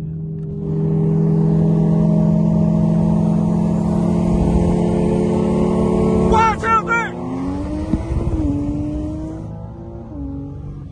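Car engine running hard at a steady pitch, heard from inside a car during a highway roll race. About six seconds in there is a brief burst of high warbling chirps, then the engine note rises.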